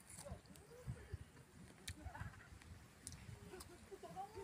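Faint chewing of a crisp jambu (rose apple), with a few soft crunches and mouth sounds.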